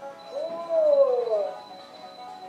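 A recorded cat meow sound effect played through a small speaker: one meow that rises and then falls in pitch. Faint background music and a thin steady high tone run under it.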